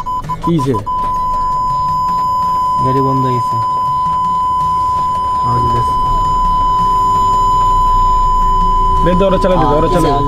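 A steady, high-pitched censor bleep tone: a few short beeps near the start, then one unbroken tone held to the end, laid over voices that show through faintly beneath it.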